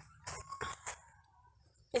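Cloth napkins rustling in short bursts as they are handled and laid down, with a faint, thin held call in the distance lasting about a second.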